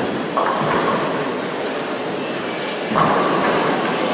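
Bowling alley din: balls rolling down the lanes and pins crashing, with a sudden clatter just after the start and a louder one about three seconds in.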